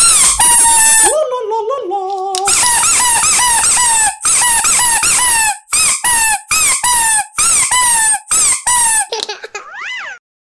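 Rubber squeaky toy ball squeezed over and over, giving a run of loud, short, high-pitched squeaks at about two a second. About a second in comes one slower, lower, wavering squeak, and near the end a short rising one.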